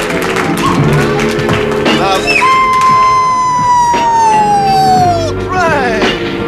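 Upbeat theme music with a long, drawn-out announcer's shout over it. The shout is held for about three seconds, sinks slowly in pitch, then slides quickly down and away near the end.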